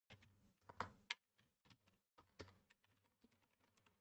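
Faint computer keyboard typing: a scattered run of keystrokes, the two loudest just under a second in, then a few lighter taps.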